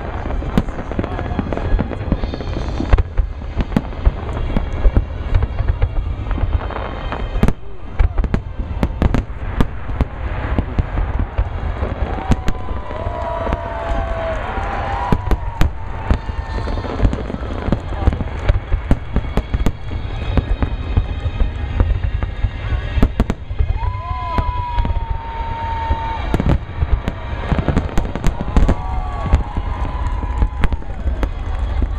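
Aerial fireworks display: shells bursting in quick, continuous succession, several loud bangs every second over a steady deep boom from the explosions.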